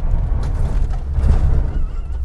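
Road noise inside the cabin of a homemade electric car conversion as it gets under way: a steady low tyre-and-road rumble with some hiss that swells a little over a second in. There is no engine sound, only the road.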